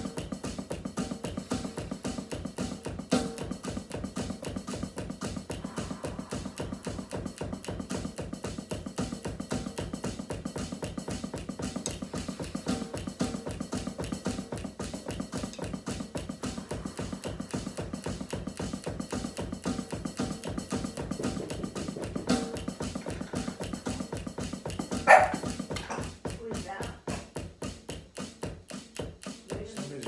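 A drum kit played in a fast, steady groove of rapid, even strokes, which thins out over the last few seconds. About 25 seconds in, a dog barks once, loudly.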